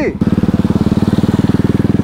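Motorcycle engine running steadily at low speed while riding, with an even, rapid pulse of about twenty beats a second.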